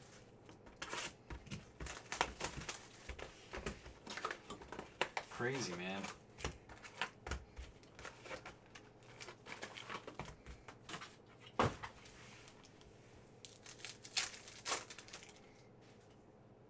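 Foil wrappers of 2018 Donruss Optic football hobby packs crinkling and tearing as packs are opened, with trading cards being shuffled and flicked through by hand in quick, irregular clicks and rustles.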